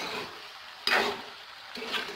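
Steel spoon stirring and scraping a potato and radish-pod curry in an aluminium pan while it sizzles and fries down until the ghee separates; one sharp scrape comes about a second in.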